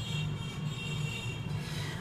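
Steady low background hum with a faint, thin high whine.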